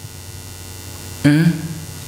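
Steady electrical mains hum with faint hiss, carried through the microphone and sound system. A man's voice speaks one short word a little past the middle.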